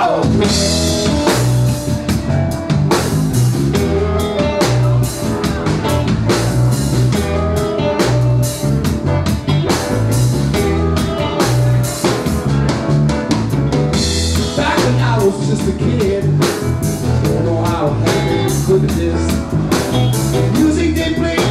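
Live band kicking straight into a New Orleans funk number: drum kit, electric bass and hollow-body electric guitar playing a steady, repeating groove.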